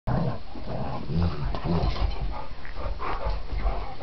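Two dogs, a black Labrador retriever and a springer spaniel, wrestling in rough play, with short low growls and panting.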